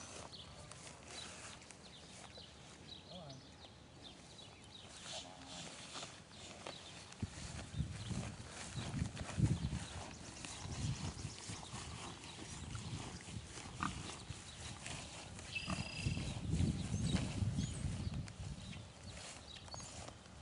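A boar grunting intermittently while being driven across grass. The low grunts come in irregular bunches, mostly in the second half.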